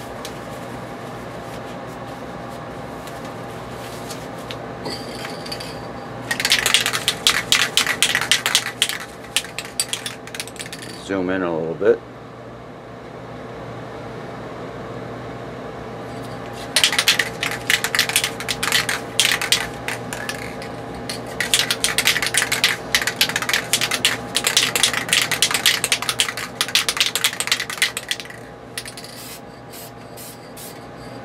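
Aerosol can of Dupli-Color clear adhesion promoter being shaken, its mixing ball rattling rapidly in three long bouts. About eleven seconds in there is a short wavering tone, and a steady hum runs underneath.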